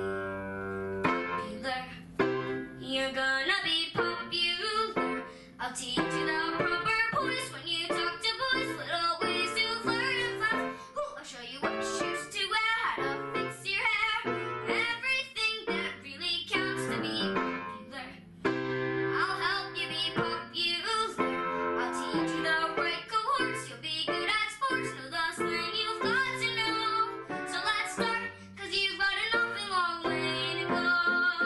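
A girl singing a show tune while accompanying herself on an upright piano. It opens on a held chord, and the piano and voice move on together about a second in.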